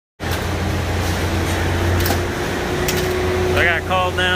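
Concrete pump running: a steady low drone with a steady hum over it.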